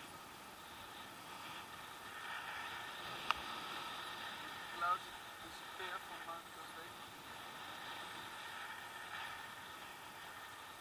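Steady rushing of air over the camera in flight, with a sharp click about three seconds in and a few brief muffled voice-like sounds near the middle.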